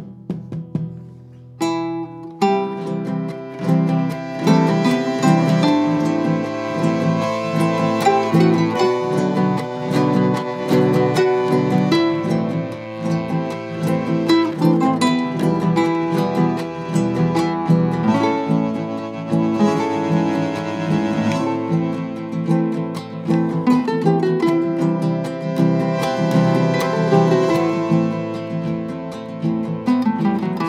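Instrumental trio of bandoneón, guitarrón and acoustic guitar playing a folk melody: sustained reed tones over plucked and strummed guitar strings. Quiet for the first second and a half, then the full ensemble comes in louder and keeps going.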